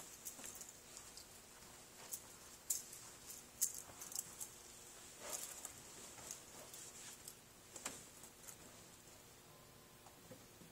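Scattered light clicks and taps at irregular intervals over a faint steady hiss, thinning out near the end; no keyboard notes are played.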